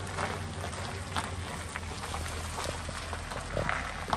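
An SUV rolling slowly over a gravel driveway: tyres crunching and popping on the stones over a low, steady engine hum.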